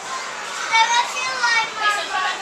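A young child's high-pitched excited vocalising: several short squealing calls that rise and fall in pitch, starting about halfway through.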